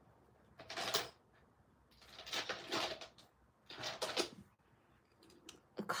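Glass nail polish bottles knocking and clinking together as they are sorted through by hand to pick a colour. There are three short clattery bouts: one about a second in, a longer one around the middle, and one near four seconds.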